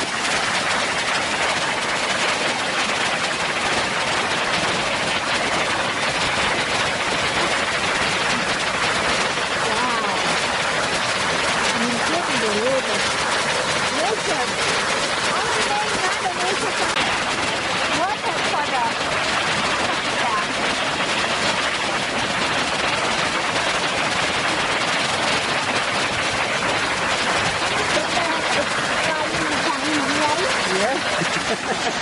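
Narada Falls, a tall waterfall flowing full after recent rainfall, rushing steadily as a loud, constant hiss of falling water. Faint voices can be heard now and then beneath it.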